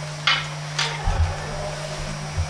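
A pause in speech with two short breathy sounds, then, from about halfway, a low rumble of the camera being handled as it pans, over a steady electrical hum.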